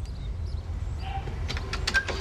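Metal door handle and latch clicking several times in quick succession in the second half, the last click the loudest, over a steady low rumble. A few faint bird chirps come in the first half second.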